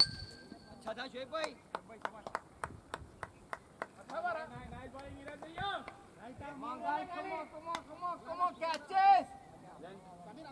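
Cricket match sounds: a sharp click with a brief ring at the start, then a run of evenly spaced sharp claps, about four a second. From about four seconds in, men's voices call out across the field until shortly before the end.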